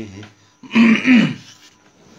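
A man clears his throat loudly in two quick hacks, about half a second after a sung line trails off.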